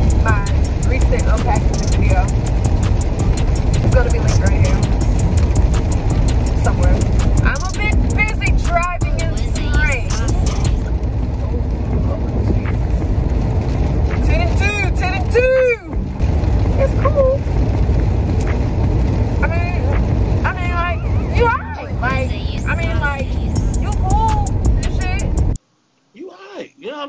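Steady low rumble of a car being driven, heard from inside the cabin, under background music with a voice in it. It cuts off abruptly near the end.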